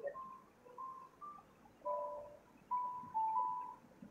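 Faint, simple melody of short single pure-sounding notes, stepping between a few pitches, like a soft chime or keyboard tune playing in the background.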